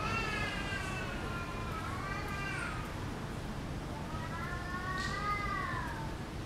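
A cat meowing twice in long, drawn-out meows. The first lasts nearly three seconds; the second, near the end, rises and then falls in pitch.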